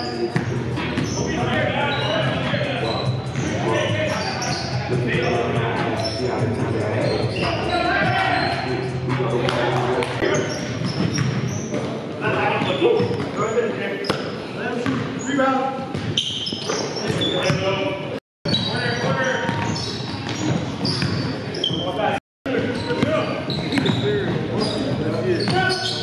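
Live basketball game sound in a gym: a ball bouncing on the hardwood court under the indistinct voices of players calling out, in a reverberant hall.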